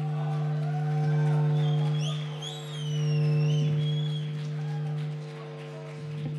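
Opening of a rock song on amplified instruments: one steady low droning note held throughout, swelling and fading in loudness, with high wavering, gliding tones over it from about two to four seconds in.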